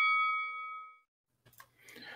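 A boxing ring bell sound effect marking the start of a round, its ring dying away over about a second. After a short near-silence, a faint soft noise comes near the end.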